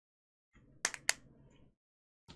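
Two sharp plastic clicks about a quarter second apart, a little under a second in, amid faint rustling as a clear plastic glitter compartment container is handled.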